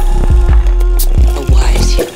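Psydub electronic music: a deep bass line under a steady, even beat of kick and hi-hat hits, with a held synth tone.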